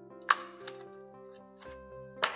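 A handheld single-hole paper punch snapping through a few sheets of paper: one sharp click just after the start, followed by a couple of fainter clicks, over soft background music.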